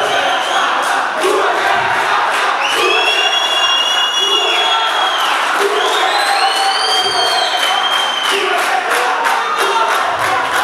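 A crowd cheering and clapping while a boxing decision is awaited. Two long, shrill, high-pitched calls rise above the crowd's noise, one about three seconds in and one about six seconds in.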